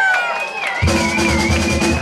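Live rock band: a long held high note rings out, and about a second in the drums and bass come crashing in together, the band playing at full volume.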